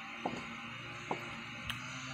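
A low steady hum with three small, sharp clicks spread across two seconds.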